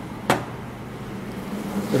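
Steady hum and hiss of a commercial kitchen's ventilation and stove, with one sharp click about a third of a second in.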